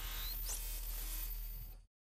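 Digital glitch sound effect for a logo animation: a steady hiss of static over a low hum, with a few quick rising sweeps, cutting off abruptly near the end.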